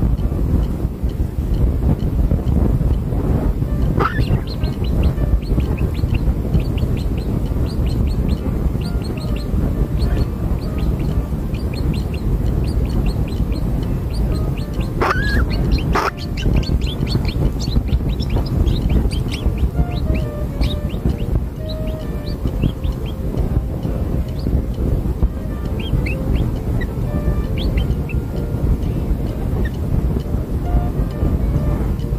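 Nestling birds chirping in many short, high begging calls as a parent brings food into the nest. The calls sit over a steady low rumbling background, with a louder gliding call about fifteen seconds in.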